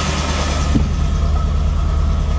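MGB GT engine running steadily at idle with first gear engaged, a low, even rumble. There is a small knock about three-quarters of a second in.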